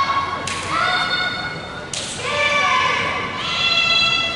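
Naginata performers' kiai shouts: long, high-pitched drawn-out calls from young women, overlapping one another, with new shouts starting sharply about half a second in, about two seconds in and again near the end, ringing in a large gym.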